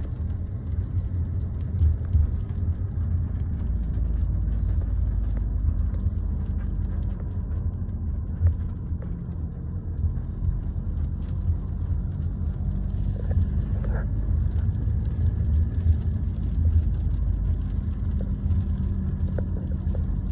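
Car engine and tyre noise heard from inside the cabin: a steady low rumble while cruising in second gear at about 20 mph, just below 2,000 rpm.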